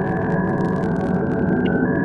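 Electrical hum of a wall of old CRT television monitors: a dense, steady drone with a thin high whine on top that dips briefly in pitch near the end, and faint static crackle.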